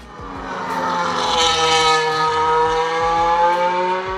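A Mercedes Formula One car's turbo V6 engine running at speed. Its note swells over the first second, then holds with the pitch rising slightly and easing back.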